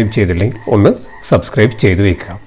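A man's voice speaking in a lecture, with two short high-pitched chirps about a second in.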